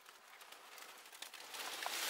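Faint rustling and small crackles of dry leaves as someone shifts about on a leaf-covered concrete floor, growing louder in the last half second.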